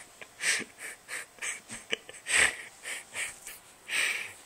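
Breathless, wheezing laughter: a run of short breathy gasps, about two or three a second, with the loudest about halfway through.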